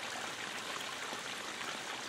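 Steady running water of a DIY backyard stream flowing over rocks.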